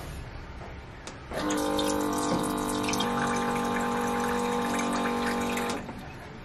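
Electric dispenser pump on a large bottled-water jug filling a glass: the small motor runs and water pours, starting about a second and a half in and cutting off shortly before the end.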